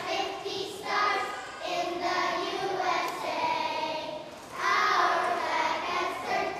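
A group of young schoolchildren singing together, phrases of held notes with short breaths between them.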